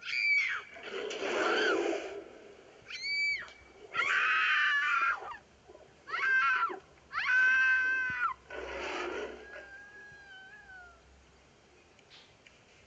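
A wild beast's snarls and shrill, wailing cries, several in quick succession, each arching up and falling off. The last is a long held cry about seven seconds in. A faint wavering whine dies away after it.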